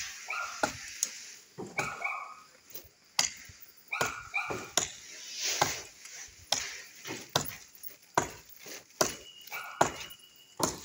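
Repeated chops of a blade into tree wood, roughly one sharp knock a second with uneven spacing. A dog barks in short bursts a few times between the chops.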